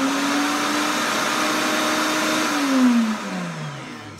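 Pampered Chef Deluxe Cooking Blender on pulse, blending heavy whipping cream and chocolate pudding mix into mousse: the motor runs at a steady pitch, then winds down, falling in pitch and fading over the last second or so.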